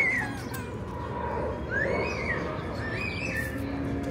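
Birds calling outdoors: a few short calls that rise and fall in pitch, about a second apart, over a steady background hiss of open-air noise.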